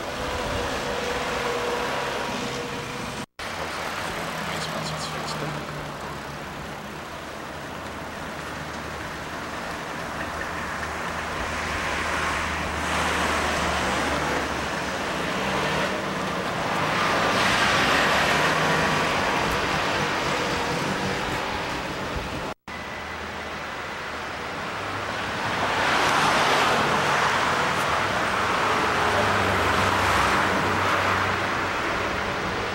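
City street traffic: cars passing by, the noise swelling and fading away about three times, loudest in the second half. The sound cuts out abruptly for a moment twice.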